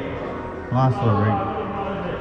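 A man's voice calling out briefly about a second in, over the steady background noise of an indoor sports hall.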